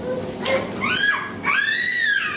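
Two high-pitched squeals from a young child, a short rising one about a second in, then a longer one that rises and falls.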